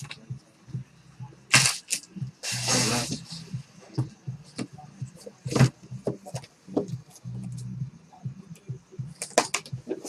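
Knocks, taps and a short scraping slide as a cardboard trading-card box is handled on a tabletop and tipped onto its side, over a faint steady low hum.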